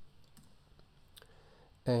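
A few faint, separate clicks of a computer keyboard and mouse as a track name is typed in and confirmed. The loudest click comes right at the start. A man starts speaking just before the end.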